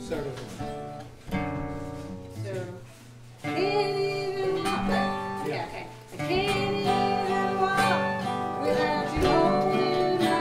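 Mandolin and acoustic guitars playing a gospel song. About three and a half seconds in, several voices come in singing the chorus over them.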